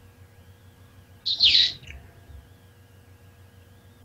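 A single short, high-pitched chirp sliding down in pitch, about a second in, over a faint steady electronic hum.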